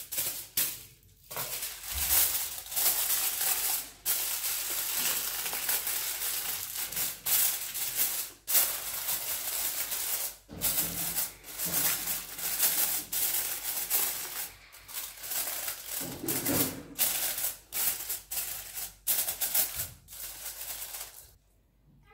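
Aluminium foil crinkling and rustling as it is pressed and crimped by hand over a round cake pan, in spells broken by a few short pauses.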